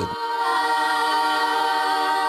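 A group of young voices singing one long held note together, unaccompanied, as a vocal warm-up. It starts just after the opening and is held at a steady pitch.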